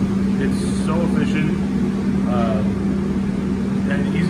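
P5-RM rotary tray sealing machine running with a steady low hum.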